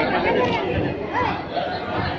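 Overlapping chatter of many people talking at once, with no single voice standing out.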